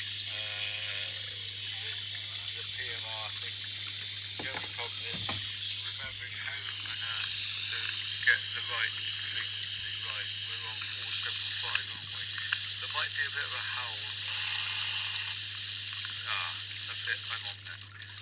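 A faint voice coming in over the radio transceiver's speaker, with a steady low hum underneath.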